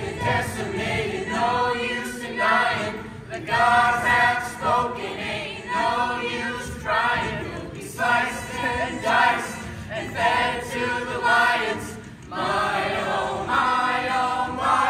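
A mixed ensemble of young voices singing together in chorus, in sung phrases about a second long with short breaks between them, with a brief dip near the end.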